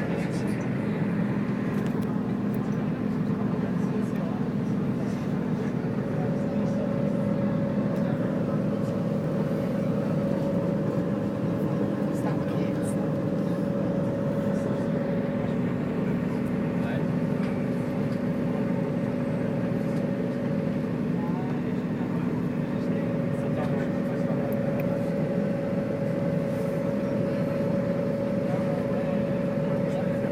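Cabin noise inside a moving coach bus: a steady engine and road drone with a constant low hum and a higher hum that drops out briefly about two-thirds of the way through.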